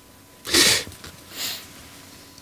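A man's sharp, breathy puff of air through the nose about half a second in, followed by a fainter breath about a second later.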